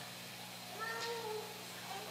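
A short high-pitched, voice-like call, lasting under a second, starts a little under a second in, over a steady low hum.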